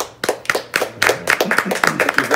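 A small group applauding, with distinct individual hand claps that start suddenly as the song ends, and some voices mixed in.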